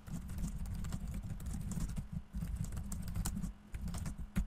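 Rapid typing on a computer keyboard: a fast, continuous run of keystrokes broken by two short pauses.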